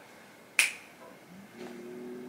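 A single sharp finger snap about half a second in, then a faint steady low tone in the second half.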